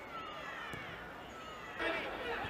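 Voices shouting and calling out on and around a football pitch during live play, overlapping, with their pitch sliding up and down. A single short knock about three-quarters of a second in, and a louder shout just before the end.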